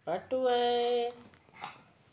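Ringneck parakeet saying "mittu" in a flat, mimicked voice: a short rising start, then one drawn-out, steady-pitched word lasting about a second.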